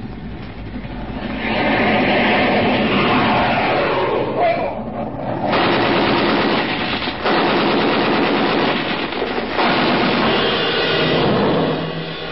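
Radio-drama sound effects of an air attack: a jet aircraft rushing in, followed from about five and a half seconds on by long bursts of machine-gun fire with brief breaks between them.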